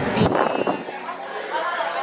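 Voices: a woman's exclamation and background chatter.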